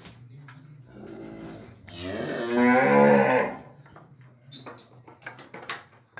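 A cow mooing: one long moo that swells to full loudness about two seconds in and fades out by about three and a half seconds, followed by a few short clicks.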